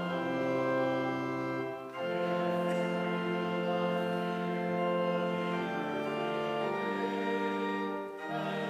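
Church organ playing slow, sustained chords, with a brief break between phrases about two seconds in and again at the end.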